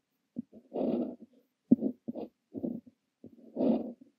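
Brass Kaweco Liliput fountain pen with an extra-fine nib scratching across paper, writing Korean characters in a run of short strokes with brief silent gaps between them. Two longer strokes, about a second in and near the end, are the loudest.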